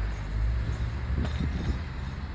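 Low rumble of wind buffeting the microphone of a handheld camera on a moving bicycle, with a short click a little past a second in.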